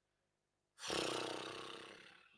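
A man's loud, voiced sigh or groan of frustration close to the microphone, starting suddenly about a second in and fading out over a second and a half.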